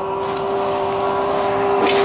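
Motorized roller window shade rolling up: its motor gives a steady hum that grows slightly louder.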